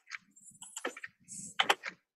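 Keys pressed on a computer keyboard: a handful of separate sharp clicks, the loudest two close together near the end.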